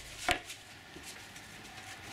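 One sharp knock about a third of a second in, followed by faint light taps and rubbing, typical of hands handling glued layers of foam and plywood held in spring clamps.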